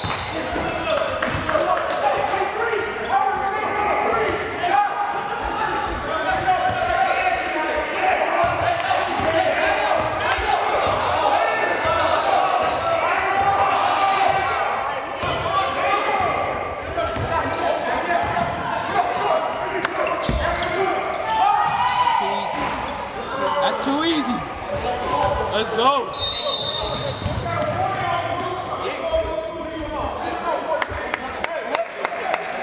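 Basketball game in a gymnasium: a ball bouncing on the hardwood court amid continuous shouting and chatter from players and the bench, echoing in the large hall.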